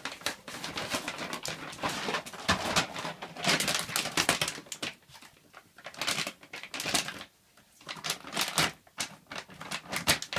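A Dalmatian tearing and chewing an empty plastic dog-food bag: bursts of crinkling and rustling, with short lulls about five seconds in and just before eight seconds.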